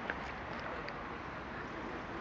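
Steady low background noise of an outdoor street, with no distinct sound event.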